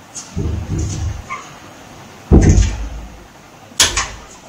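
A door being handled at its knob: two dull thuds, the louder about two seconds in, then a sharp latch click near the end.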